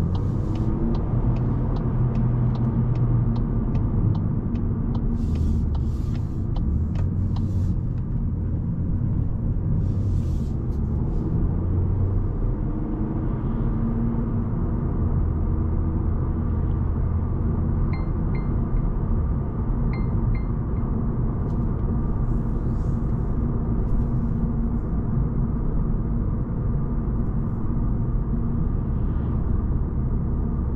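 Cabin sound of a 2024 Volkswagen Golf's 1.5 TSI four-cylinder petrol engine and tyres while driving: a steady low rumble whose engine note shifts slightly up and down. A quick run of light, evenly spaced ticks sounds in the first few seconds.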